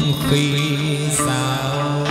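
Chầu văn (hát văn) ritual music from a live traditional ensemble, with one long note held steady and a brief high splash about a second in.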